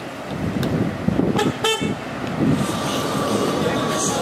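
A car horn gives a short toot about one and a half seconds in, over a passing car's engine and street traffic.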